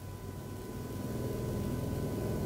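Low background rumble that grows slowly louder, with a thin steady high tone over it.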